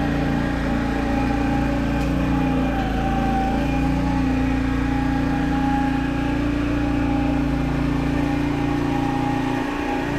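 Engine of a Brouwer ride-on lawn roller running at a steady speed: an even drone with a constant higher whine over it.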